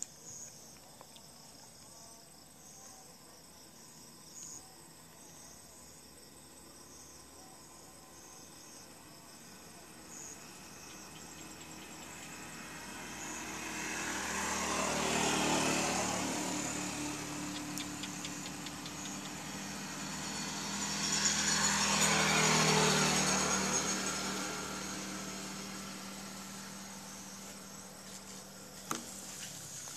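Engine sound of passing motor vehicles that swells and fades twice, first around the middle and again a few seconds later, over faint steady high-pitched chirping.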